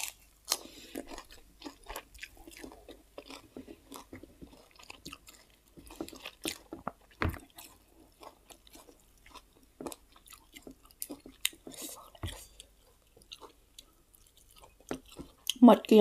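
Close-up chewing and lip-smacking of a person eating grilled pork, a string of short, irregular wet clicks from the mouth with a couple of duller knocks.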